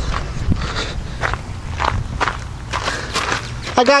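Footsteps on gravel, about two steps a second, over a low steady rumble.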